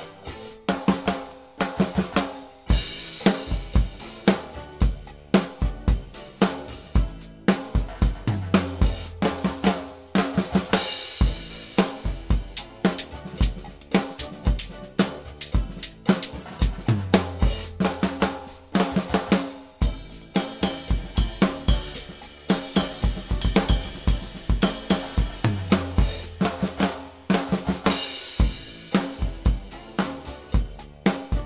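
Acoustic drum kit played with sticks in a steady groove: kick drum, snare and hi-hat, with cymbal crashes. A low sustained tone sounds under the beat three times, about eight seconds apart.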